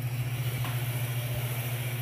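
Kick scooter's small wheels rolling fast across a concrete floor, an even hiss, with a faint tick about two-thirds of a second in. A constant low hum runs underneath.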